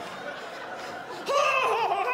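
A person bursting into loud laughter a little past halfway through, after a quieter first second.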